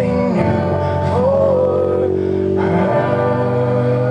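Live acoustic guitars strummed under a man singing long held notes.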